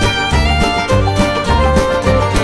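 Live string band playing an instrumental passage with a steady beat, the fiddle prominent over mandolin, bass guitar, drums and acoustic guitar.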